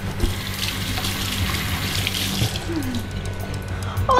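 Bathroom tap running into the sink basin while hands are washed under the stream, a steady splashing hiss that eases off near the end.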